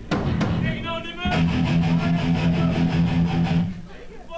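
Hardcore band playing live: two sharp drum hits open it, a shouted vocal comes about a second in, then a distorted electric guitar chord rings out and is cut off shortly before the end.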